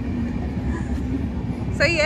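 Steady low rumble of street background noise, with a voice starting near the end.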